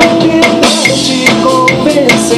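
A drum kit played along to a backing track of a pop song: a steady beat with a sharp hit about every 0.4 s over the song's melodic backing.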